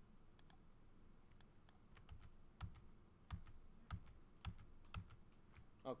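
Faint, irregular tapping of computer keys, with a few stronger keystrokes a little over half a second apart in the second half.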